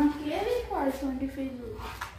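Speech only: a woman's voice, drawn out and rising and falling in pitch, with no other sound standing out.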